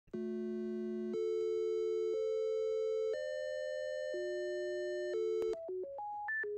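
Computer-synthesized tones generated by a ChucK program: two or more steady electronic tones sounding together and changing pitch about once a second. About five and a half seconds in, this switches to a quicker run of short notes, several a second.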